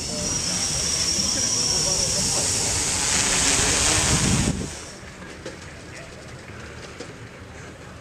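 Quadrocopter's electric motors and propellers in flight, a steady whirring noise with a high whine, which cuts off suddenly about four and a half seconds in, leaving quieter outdoor ambience.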